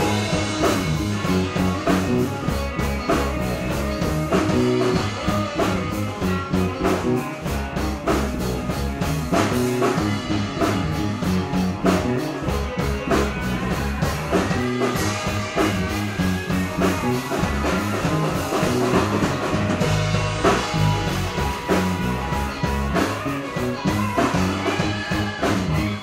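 Live rock band playing in a bar: drum kit keeping a steady beat under guitar, with no pause.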